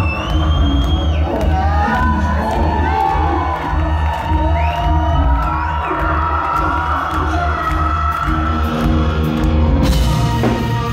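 Live rock band playing a song's intro through a loud venue PA, with a steady pulsing low end and held notes, over a crowd cheering. The full drum kit comes in right at the end.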